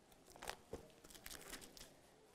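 Faint rustling and flicking of thin Bible pages being turned by hand: a few soft, short crinkles, the clearest about half a second in.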